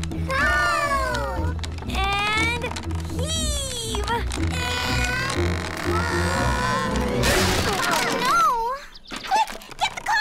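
Cartoon soundtrack: music under high sliding voice cries of effort, then about seven seconds in a rattling crash and, near the end, a couple of sharp clunks as a small wooden cart's wheel breaks off.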